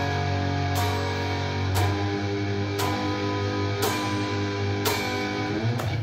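Heavily distorted Telecaster-style electric guitar playing a punk power-chord riff, each chord struck about once a second and left ringing over a sustained low note.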